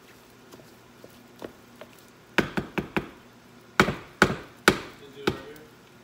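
A wooden spoon knocking against the rim of a mixing bowl to shake off mashed potatoes: four quick taps a little past halfway, then four louder, slower knocks.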